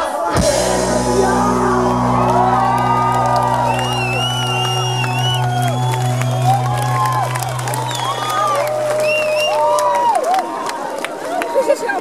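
Live rock band holding one low sustained note or chord that rings on and then cuts off about ten seconds in, while the crowd shouts and whoops over it.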